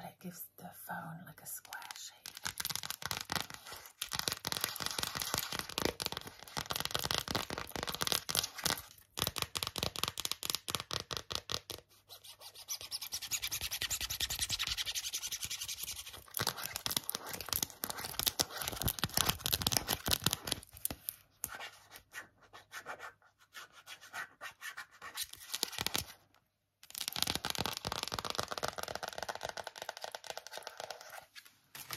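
Long acrylic fingernails tapping fast and scratching on phone cases: rapid trains of clicks in bursts separated by short pauses, with a few seconds of steadier scratching near the middle.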